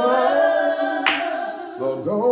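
Voices singing a worship song without instruments, holding long notes.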